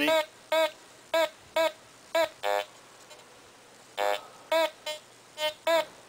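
Teknetics T2 metal detector sounding short audio tones as its coil sweeps over a square iron nail and a quarter: about ten separate beeps, mostly a clear higher tone for the coin, with a couple of lower, buzzier grunts for the iron about two and a half and four seconds in.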